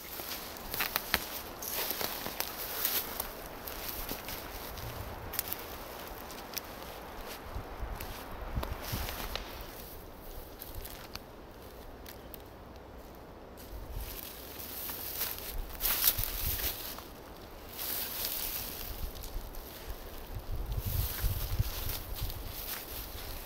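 Footsteps and rustling through undergrowth and leaf litter on a forest floor, with irregular small cracks and occasional low rumbles.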